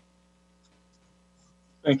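Faint, steady electrical hum, a low drone with a few constant tones, on the meeting's audio line. A man's voice cuts in loudly near the end.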